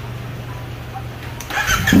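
CFMOTO 450SR parallel-twin engine idling steadily through an SC Project carbon exhaust. About one and a half seconds in, a sharp throttle rev makes it much louder.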